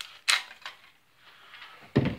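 Plastic clicks and rattles of toy lightsaber parts being handled, loudest about a quarter of a second in, then a heavy thump at the very end.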